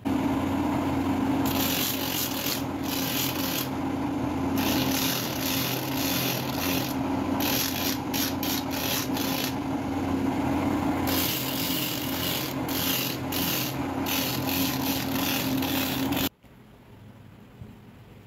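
Shoe-repair sanding machine running with a steady motor hum, and a black sole being pressed against its abrasive wheel in repeated gritty rasping strokes. The sound stops abruptly about sixteen seconds in.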